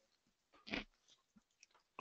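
Near silence in a pause between words, with one brief faint noise about two-thirds of a second in and a couple of very faint ticks later.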